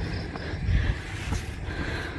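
Outdoor background noise: an uneven low rumble, like wind on the microphone, with a few faint knocks.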